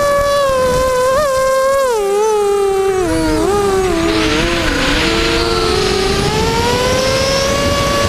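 The motor and propeller of a radio-controlled aircraft whine steadily and loudly. The pitch drops over about two seconds to its lowest a little past the middle, with rushing air noise as the craft dives, then climbs back as the throttle comes up and the craft levels out low over the grass.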